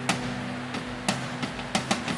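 Live band music in a gap between vocal lines: a steady held low chord with a few sharp drum hits, one near the start, one about a second in and two close together near the end.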